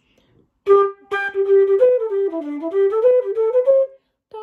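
Irish flute playing a short phrase of notes, each started with a tongued 'D' articulation: a brief opening note, then a held note and a quick run that dips lower in pitch and climbs back up.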